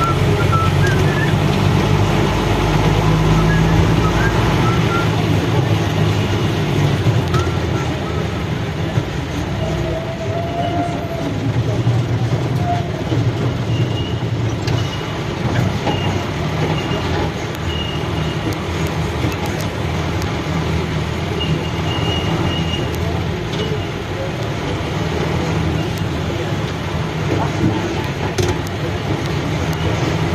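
Vehicle engine and road noise heard from inside the cabin in slow, busy city traffic: a steady low hum with voices around it and short high beeps now and then.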